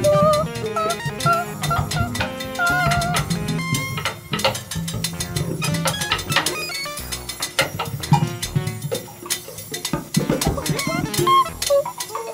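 Free-improvised jazz played by an ensemble: dense, irregular percussion clatter over a low sustained bass tone, with a wavering pitched line in the first few seconds and again near the end.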